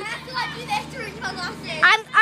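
Children's voices: high-pitched calls and chatter with no clear words, over a steady low hum.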